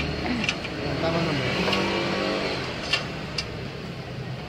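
Cordless drill-driver motor whining as it spins a bolt into a motorcycle top-box bracket, running steadily for about two seconds and then fading, with a few sharp clicks.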